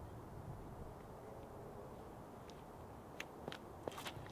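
Faint outdoor ambience with a steady low rumble, then three quick sharp steps near the end: a disc golfer's run-up footsteps on the tee pad as he moves into his drive.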